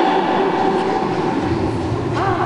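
Indistinct voices and a low rumble echoing in a large gymnasium hall, with no clear words; the rumble grows stronger near the end.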